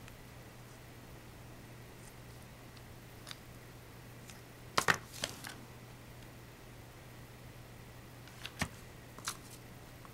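Quiet handling of craft tools on a table: scissors snipping a small piece of felt, a sharp double knock about halfway through, and a few lighter clicks near the end.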